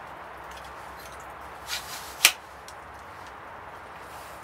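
Telescopic fiberglass window-cleaning pole being handled: a soft sliding rub, then one sharp click a little past two seconds in as a lever clamp on its sections snaps, with a few faint ticks after, over a steady outdoor hiss.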